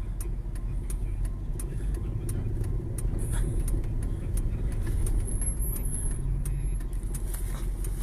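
Car cabin noise while driving: a steady low engine and road rumble heard from inside the vehicle, with scattered faint ticks.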